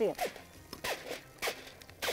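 Aluminium foil being handled, giving several short, sharp crinkles about half a second apart.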